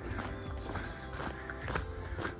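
Footsteps on a gravel road with the taps of trekking poles, a regular stream of short ticks, under steady background music.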